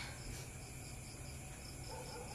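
Faint insect chirping: a short high pulse repeating about four to five times a second, over a low steady hum.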